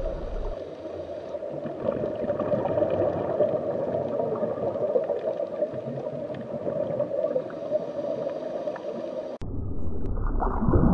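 Muffled underwater water noise: a steady rush with gurgling, as heard through a camera under water. The sound changes abruptly near the end.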